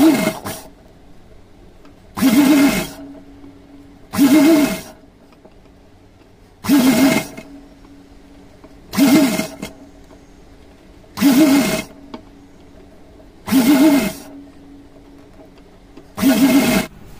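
A sewing machine run in six short bursts of stitching, each under a second and about two seconds apart, as folded cotton fabric is fed under the presser foot.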